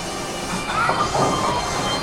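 Steady background din of a busy bowling alley: a continuous rumble of balls rolling down the lanes, mixed with general hall noise.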